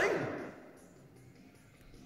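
A man's voice ends a word on a rising, sing-song pitch that rings on briefly in a large hall, followed by a pause with only faint room tone.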